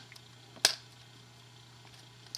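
A single sharp click about half a second in as the LCD's mounting bracket is pushed down onto the remote's circuit board and its tabs lock in, over a faint steady hum.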